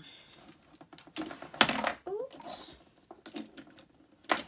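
Makeup containers being handled: a run of light plastic clicks and clatter as products are picked up and set down, with one louder knock about one and a half seconds in.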